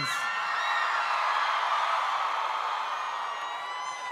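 A large crowd cheering, with high-pitched screams over it, slowly fading.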